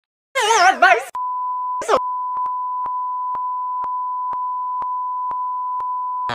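Two brief high-pitched warbling vocal sounds, one near the start and one about two seconds in. Then a steady, single-pitch electronic beep tone starts just after a second and runs on without a break, with faint irregular clicks over it.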